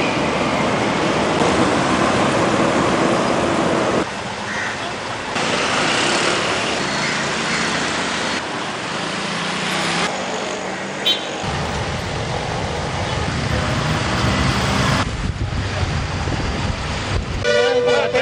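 Road traffic noise of heavy city traffic: cars, trucks and motorcycles running past, with a vehicle horn tooting. The sound changes abruptly several times.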